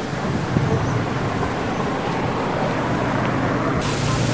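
Steady outdoor rushing noise of wind and distant road traffic, with no distinct events.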